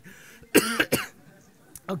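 A short cough about half a second in, with a brief click near the end.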